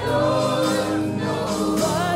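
Live gospel worship music: a woman singing lead over backing voices, with bass guitar and drums.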